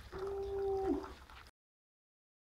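A single held tone, like a voice sustaining an 'oooh', lasting about a second and dipping in pitch at the end. About a second and a half in, the sound cuts out abruptly.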